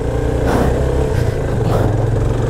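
Motorcycle engine running at a steady low drone while the bike rides up a gravel road.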